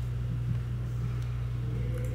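A steady low hum with no change in pitch or level.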